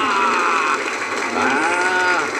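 A woman's high-pitched, drawn-out cheering cries, twice: one falling in pitch at the start, and a second one rising and falling from about a second and a half in. They celebrate a strike.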